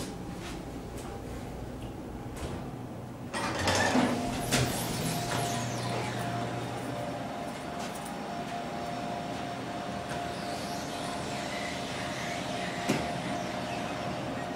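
Schindler elevator cab running with a low hum, then its doors sliding open about three seconds in. A thin steady tone carries on afterwards.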